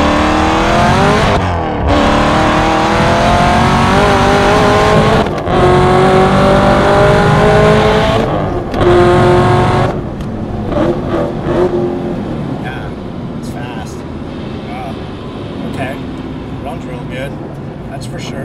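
Hennessey 1200 hp Camaro ZL1 1LE, its 416 stroker V8 with an LT5 supercharger, accelerating hard at wide-open throttle. The engine pitch climbs steeply through three gears, with short breaks for manual upshifts about one and a half, five and eight and a half seconds in. About ten seconds in the throttle closes, and the engine falls to a quieter, lower note as the car slows.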